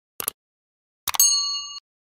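Sound effects of a subscribe-button animation: a short click, then about a second in another click followed by a bright notification-bell ding with several ringing pitches that lasts about two-thirds of a second and stops abruptly.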